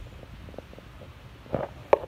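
Low, uneven rumble of wind and handling noise on a handheld phone's microphone, with a short louder burst and a sharp click near the end.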